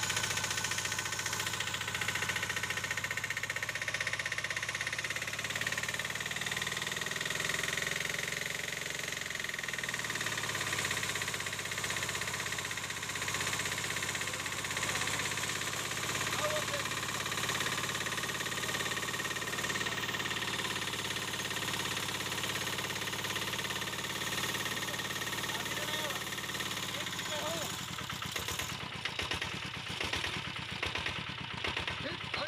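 Portable engine-driven water pump running after priming, with water gushing from its outlet; the pump is delivering water. About ten seconds in, the engine speed drops, and near the end the engine cuts out.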